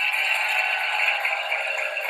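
Studio audience applauding, a steady even clatter of many hands.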